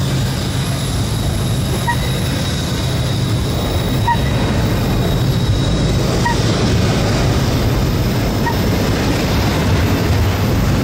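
Double-stack intermodal well cars loaded with containers rolling slowly past upgrade, a steady heavy rumble of wheels on rail. A short high-pitched ping recurs about every two seconds.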